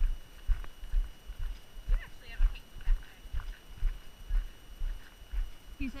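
Footsteps of a hiker walking on a gravel trail, a steady rhythm of low thuds about two a second, with light taps from trekking poles.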